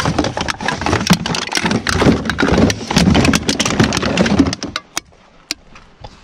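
Recycling being rummaged through by hand: plastic bottles and aluminium cans clattering and crinkling against each other in a plastic bin, with many sharp clicks. It stops about three-quarters of the way in, leaving a few separate clicks.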